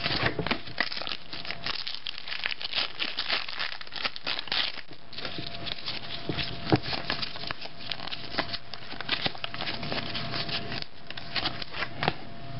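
Crinkling and tearing of a trading-card pack wrapper as it is ripped open, with the cards inside handled and shuffled, an irregular crackle throughout.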